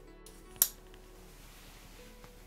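Fallkniven P folding knife's blade snapping shut: a single sharp metallic click about half a second in, over faint background music.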